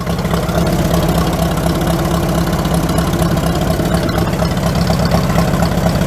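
Farmall M tractor's International 4.1 L four-cylinder gasoline engine idling steadily, with an even, unchanging firing beat.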